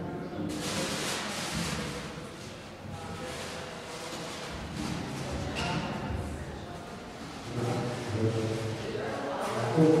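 Indistinct voices in a large room, mixed with faint music, with a voice saying "thank you" at the very end.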